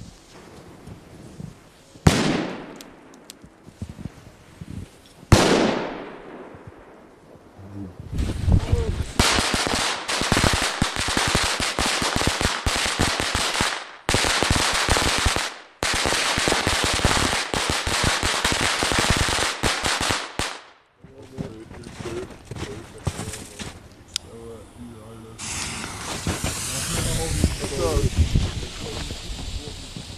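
Two firecracker bangs, about two and five seconds in, each echoing away. Then a firework burning on the ground crackles and hisses densely for about twelve seconds. A quieter hissing spray of sparks follows near the end.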